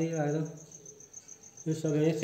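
A cricket chirping in a fast, even pulse that keeps going throughout, heard plainly in a pause between a man's words, which trail off just after the start and resume near the end.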